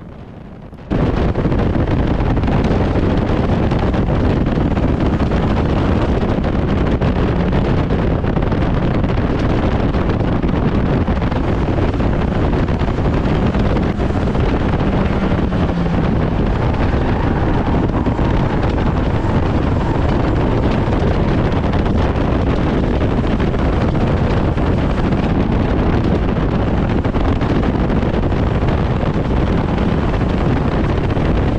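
Stock car's engine running hard around an oval, heard from inside the stripped cabin and largely buried under heavy wind buffeting on the microphone. The sound is loud and steady and cuts in abruptly about a second in.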